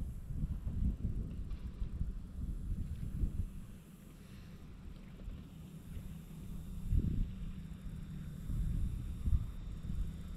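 Low, uneven rumble of wind buffeting the microphone on an open boat deck, rising and falling in gusts, with a stronger thump about seven seconds in.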